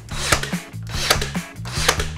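A brad nailer firing three times, about three-quarters of a second apart, as it drives brad nails through the face frame into the wooden cabinet, over background music with steady bass notes.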